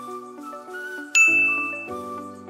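One bright ding sound effect about halfway through, ringing for most of a second: the cue to switch sides in a timed exercise. It plays over soft background music with gently stepping held notes.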